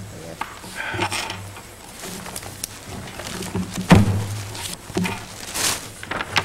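Papers and a ring-bound document handled and shuffled on a wooden desk close to a microphone: rustling with several knocks and bumps, the loudest about four seconds in, over a steady low electrical hum.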